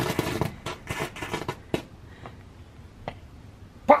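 Novelty tank-shaped ground firework spitting sparks out its front with rapid crackling. The crackle thins out about two seconds in, leaving a few faint pops as it burns down.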